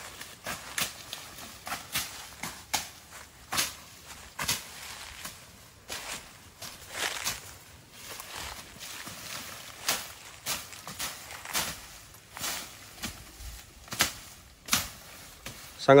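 Machetes chopping and slashing through weeds and brush: irregular sharp cuts, roughly one or two a second, with the rustle of cut vegetation.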